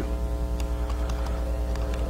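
Steady low electrical hum with a buzz of steady overtones above it, unchanging and without a break.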